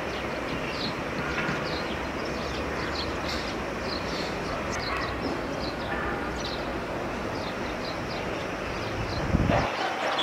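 Outdoor ambience: small birds chirping in short repeated notes over a steady background hum of distant traffic, with a brief low thump near the end.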